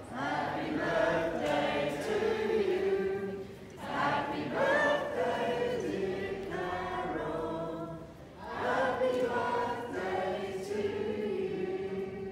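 A group of people singing together in unison, in three phrases with a short break between each and a long held note near the end.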